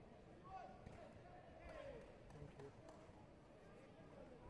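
Faint sports-hall ambience: distant voices calling out in a reverberant hall, with a few soft thuds.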